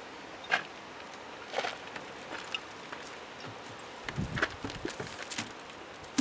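A few scattered footsteps and light knocks as a wooden door is opened and walked through, over a low steady background.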